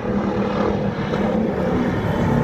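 Chevrolet stock car's V8 engine running at speed along the straightaway, a steady loud drone.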